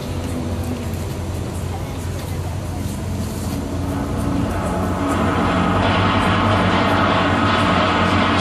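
Symphony orchestra playing a sustained passage with a low, steady bass. It swells louder and fuller about five seconds in.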